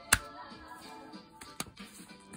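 Faint background music under sharp clicks from a plastic CD jewel case being handled: a loud click just after the start and another about a second and a half in.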